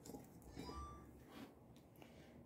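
Near silence: room tone with a few faint handling sounds.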